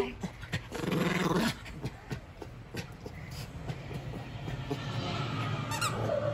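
Schipperke growling while it bites and shakes a plush toy, the low growl strongest about a second in, with rustling and soft knocks on the couch cushions throughout.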